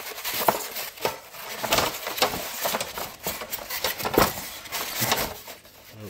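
Aluminium telescope tripod being pulled out of its foam packaging: a continuous run of scraping and rubbing against the foam, with irregular light clicks and knocks of the metal legs.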